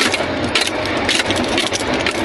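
Vehicle engine running under load inside the cab while driving fast over a rough, muddy road, with frequent short knocks and rattles of the cab and body.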